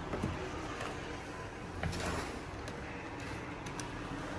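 Faint knocks and rubbing of cardboard fireworks tubes being handled and set down on a hard countertop, over low room noise.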